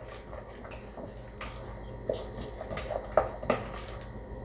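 A utensil stirring and scraping a wet batter of mashed sweet potato, buttermilk, honey and melted butter around a mixing bowl, a sloppy liquid stirring sound with a few light knocks of the utensil against the bowl.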